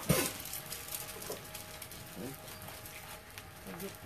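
Food frying on a hot flat-top gas griddle, a low, even sizzle with faint distant talk. There is a sharp sound right at the start.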